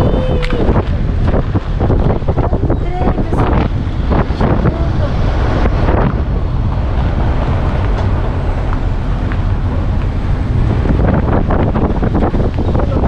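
Wind buffeting the microphone: a loud, continuous low rumble, with a few short pitched voice-like sounds over it in the first half.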